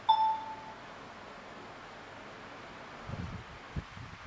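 A single short electronic beep with a clear tone, fading over about half a second, right at the start: the Sony Bravia Android TV's interface sound as a Wi-Fi network is selected and it begins connecting. A few dull low thumps follow near the end.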